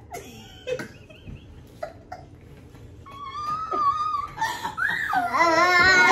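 A toddler's high-pitched squealing, starting about three seconds in and rising and falling in pitch, followed near the end by loud laughter.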